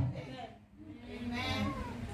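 The tail of a man's microphone-amplified voice fades out, then after a short lull a faint, drawn-out high voice with a wavering pitch rises for about a second in the second half.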